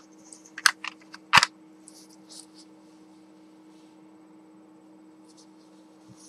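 Dry paper tissue crinkling and rustling as it is rubbed across the lips: a few sharp crackles in the first second and a half, then softer rustles. A faint steady electrical hum runs underneath.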